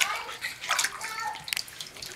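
Bathwater splashing and dripping as a baby is washed in a bath seat in a tub, in irregular small splashes, with a sharp one right at the start.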